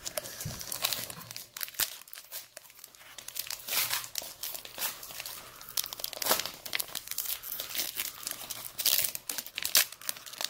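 Foil wrapper of a Pokémon card booster pack crinkling in the hands and being torn open, an irregular run of sharp crackles throughout.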